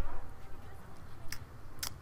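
Two sharp, bright clicks about half a second apart, over a steady low hum, after a brief bit of voice at the start.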